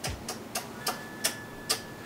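Dry-erase markers being handled, giving a series of irregular light clicks, about three or four a second, as the plastic barrels and caps knock together.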